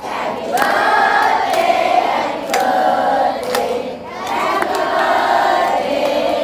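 A large group of voices singing together in chorus, with hand claps keeping time about once a second.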